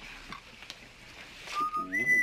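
A person whistling a few clear notes, starting about one and a half seconds in and stepping up in pitch near the end, after a stretch of quiet room sound.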